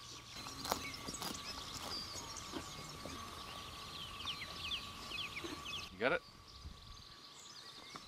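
Small birds singing, with quick repeated chirps, over a faint steady high-pitched tone, and a couple of soft knocks within the first second and a half.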